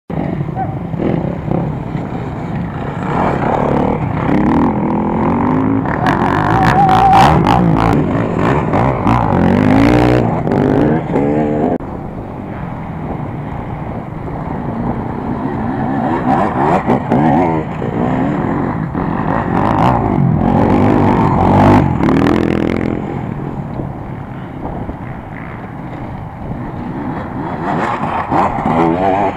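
Dirt bike engines revving hard and easing off over and over as bikes ride an off-road course. The sound swells from about four to eleven seconds in and again from about sixteen to twenty-two seconds, then fades before a bike comes close near the end.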